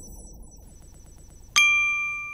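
News-channel outro jingle: a faint electronic music bed, then about one and a half seconds in a single bright chime strikes and rings on, fading slowly.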